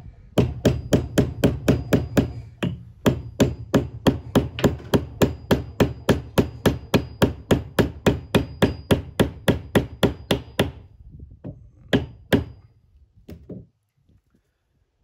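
Hammer tapping a flat steel wedge into the top of a hatchet's new wooden handle to lock the head on: quick, even blows about four a second for some ten seconds, with a brief break about two and a half seconds in, then two harder single blows near the end.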